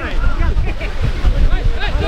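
Several voices shouting and calling across a football pitch at once, in short overlapping calls, over low wind buffeting on the microphone.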